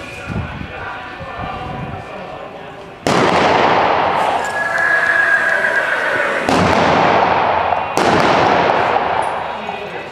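Three sharp revolver shots of blank ammunition, about three, six and a half and eight seconds in, each followed by a long echo in the enclosed metal arena.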